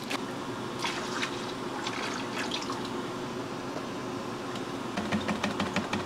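Liquid yeast being poured from its container into a stainless steel fermenter of cooled wort, a steady pouring and trickling. Near the end come a few short clicks and knocks of metal fittings on the fermenter lid.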